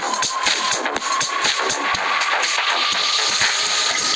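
Two electronic dance tracks playing together in a phone DJ mixing app, beat-matched at 122 BPM, with a steady driving beat.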